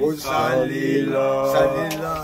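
A man singing a chant-like melody unaccompanied, holding steady notes with short breaks between phrases.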